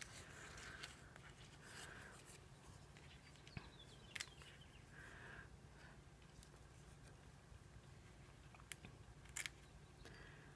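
Near silence: faint handling of small die-cut paper pieces, with a few soft clicks scattered through.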